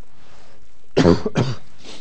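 A man coughing three times in quick succession about a second in, the first cough the loudest and the last the weakest.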